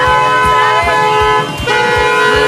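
Vehicle horn sounding two long steady blasts, the first about a second and a half, the second starting just before the end.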